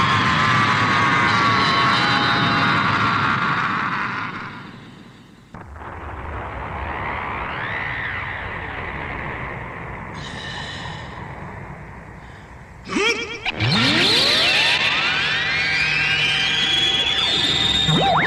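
Science-fiction battle sound effects. A dense, loud electronic effect fades out about four seconds in. Warbling pitch glides follow, then a crackle and a long sweep rising steadily in pitch near the end.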